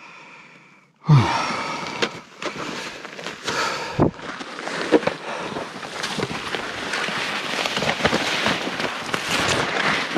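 A person breathing out hard, falling in pitch, about a second in. Then steady rustling and scraping of snow-covered spruce branches against a nylon jacket, broken by many sharp twig snaps, as he pushes through dense trees.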